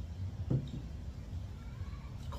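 Steady low background rumble, with a brief murmured voice sound about half a second in.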